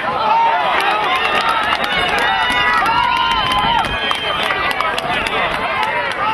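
Several voices shouting and calling out over one another across an open lacrosse field, with scattered sharp clicks throughout.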